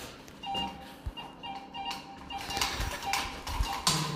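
Music with a repeating electronic beeping tune, and a sharp knock just before the end.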